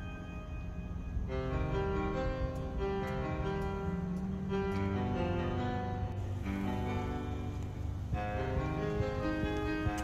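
Instrumental background music, growing fuller about a second in.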